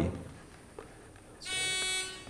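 Game-show contestant buzzer sounding once about a second and a half in: a steady electronic buzz lasting about half a second, as a contestant buzzes in to answer.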